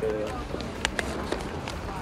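A few sharp clicks and knocks of small objects being handled, over steady outdoor background noise.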